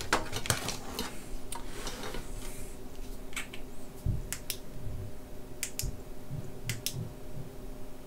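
Scattered sharp clicks and light clatter of test leads and wires being handled at an opened electronic instrument, with a dull knock about four seconds in, over a faint steady hum.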